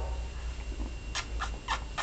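Four short, sharp clicks about a third of a second apart, starting about a second in, over a steady low hum.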